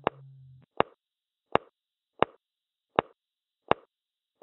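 Ticking sound effect: six short, sharp clicks at an even pace, about one every three-quarters of a second. A low held note left over from the music fades out over the first half second.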